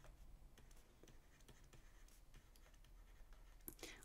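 Near silence with faint, light taps and scratches of a stylus writing by hand on a tablet.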